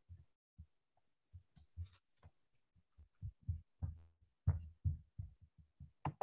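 Soft, irregular low thumps over a video-call line, a few at first and then coming more often in the second half.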